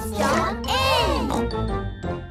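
A short, bright children's music jingle with a voice over it.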